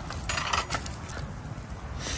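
A few light metallic clinks and scrapes as a cooking pot is pushed down into campfire coals, over a steady low rumble of wind.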